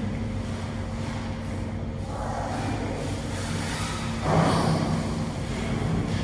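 Steady low background hum and rumble with a few fixed low tones, and a brief louder swell about four seconds in.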